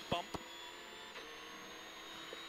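Subaru Impreza rally car's flat-four engine running hard, heard from inside the cabin, with a single sharp knock about a third of a second in as the car hits a bump. About a second in the engine note steps down and holds lower and steady.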